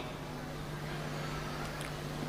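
Steady low hum over faint background hiss, the room tone of the sermon recording.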